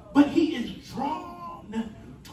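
A man preaching with an amplified voice, drawn out and sliding up and down in pitch in a sing-song delivery rather than plain talk.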